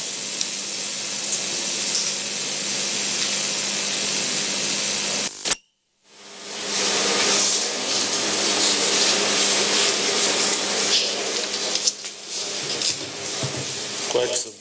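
Steady hiss of static on a broadcast audio feed, with a faint low hum under it. About five and a half seconds in it cuts out with a click, drops to dead silence for half a second, then fades back in.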